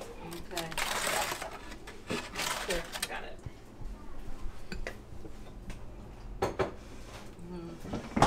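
Aluminium foil rustling and crinkling as it is handled over a dish of food, with a few light clinks of kitchen dishes. Faint voices murmur in the background.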